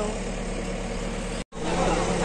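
Steady low hum of an idling road vehicle's engine with traffic noise. The sound drops out completely for an instant about one and a half seconds in, then a busier street sound with voices follows.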